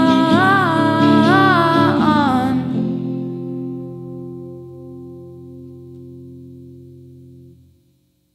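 A woman sings a wordless line that rises and falls, over an electric guitar chord, until about two and a half seconds in. The song's final guitar chord then rings on, fading slowly, and is cut off abruptly just before the end.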